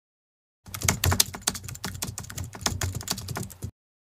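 Keyboard typing sound effect: a rapid, irregular run of key clicks that starts about half a second in and cuts off suddenly near the end.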